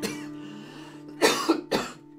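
A man coughs twice, a little past a second in, over an acoustic guitar chord struck at the start and left to ring out.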